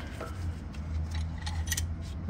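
Faint scattered metallic ticks and clicks from a steel C-clamp being set against a brake caliper and its threaded screw being handled, over a steady low background hum.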